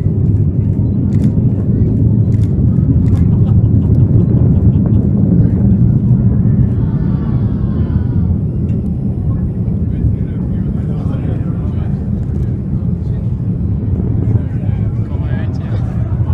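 Delta IV rocket's distant launch rumble arriving across the water: a deep, steady roar with sharp crackles in the first few seconds, swelling a few seconds in. Faint voices are heard beneath it.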